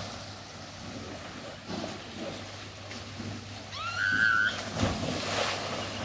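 Swimming-pool water sloshing and splashing as swimmers move through it, with a louder rush of splashing about five seconds in. A brief rising whistle-like call with a wavering held note sounds about four seconds in.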